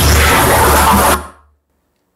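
Loud rushing roar from missile-launch footage played over the hall's sound system, mixed with music, with a deep rumble underneath. It cuts off about a second in.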